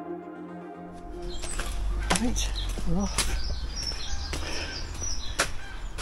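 Background music fading out about a second in, then a low rumble and about five sharp knocks from the camera being picked up and moved.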